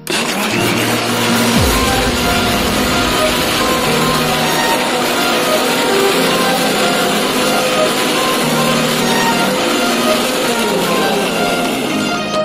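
Electric mixer grinder running loud and steady, blending lassi with ice cubes; it starts abruptly at the very beginning. Background music plays over it.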